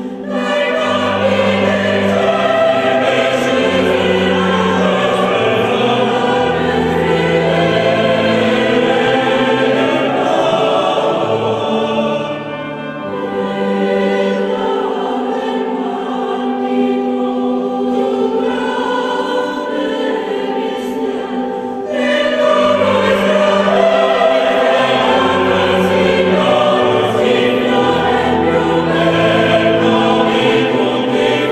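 Choral music: a choir singing long held notes over a low sustained accompaniment. The music changes abruptly about 22 seconds in.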